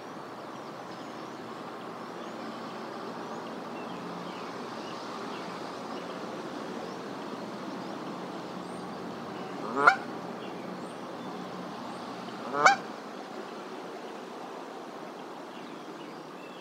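Canada goose honking twice, a few seconds apart, each honk short, loud and rising in pitch, over a steady background hiss.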